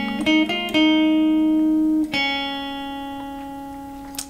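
Electric guitar, capoed at the 6th fret, picking a short single-note melody. A few quick notes are followed by a held note, then a final note is left ringing and slowly fades.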